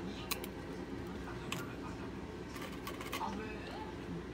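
A few light metal clicks and taps as a flat dalgona press and a wire cookie cutter are handled on a metal tray, stamping a chick shape into the soft sugar candy.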